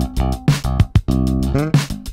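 Sterling by Music Man S.U.B. Ray4 electric bass, plugged straight into the desk, playing a funk line over an Oberheim DMX drum machine beat. A note slides up in pitch about three-quarters of the way through.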